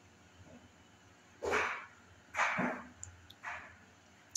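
A dog barking three times, about a second apart, the third bark fainter than the first two.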